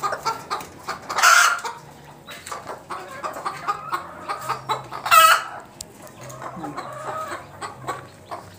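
Native chickens clucking, with two short, loud calls standing out, about a second in and again about five seconds in.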